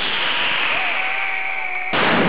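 Mascletà fireworks: a dense rushing whistle from many whistling rockets at once, sliding steadily down in pitch. Near the end it breaks into a loud burst of crackling firecrackers.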